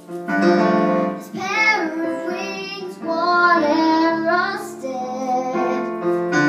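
A young girl sings a slow ballad over piano chords played on a Casio electric keyboard. Her voice comes in just after the start, following a brief moment of keyboard alone, and carries on in phrases with short breaths between them.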